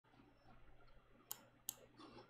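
Two short, sharp computer mouse clicks about half a second apart, over faint room tone.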